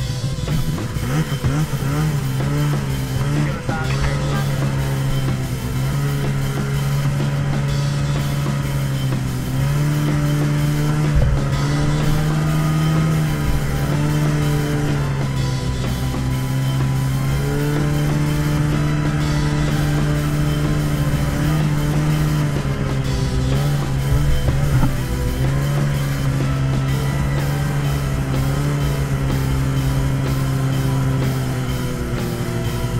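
Arctic Cat ZR 6000 RR snowmobile's two-stroke engine running steadily while riding, mixed with rock music with a steady beat.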